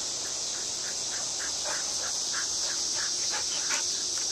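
A steady, high-pitched drone of insects, with a string of short chirps several times a second that grows stronger in the second half.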